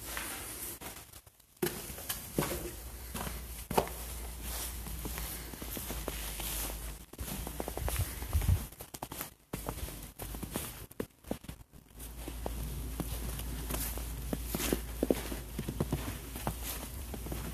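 Footsteps walking through snow, an uneven run of steps with a few sharper knocks among them.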